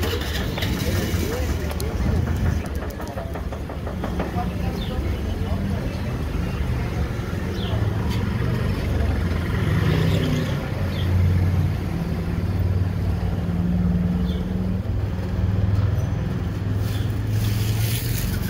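Motor vehicle engine running nearby, a low hum that shifts in pitch, with people's voices in the street near the start.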